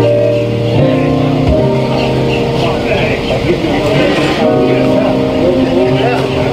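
Church music: a keyboard holds sustained chords that change every second or so, with voices over it.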